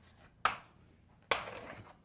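Writing on a board: a short scratchy stroke about half a second in, then a longer one lasting about half a second near the end.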